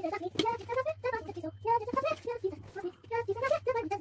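A high-pitched voice talking in short phrases, with a faint low hum underneath.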